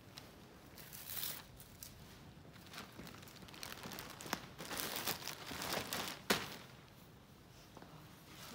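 Plastic poly mailer bag crinkling and rustling as clothes are pushed into it and its self-adhesive flap is pulled open and pressed shut, with a sharp click a little past six seconds in.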